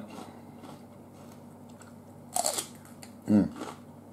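A crisp bite into a raw celery stalk: one short crunch a little past halfway.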